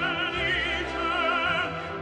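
Opera music: a singer holding notes with wide vibrato over instrumental accompaniment.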